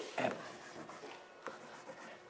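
Chalk writing on a chalkboard: faint scratching with a few light taps as the chalk strokes across the board.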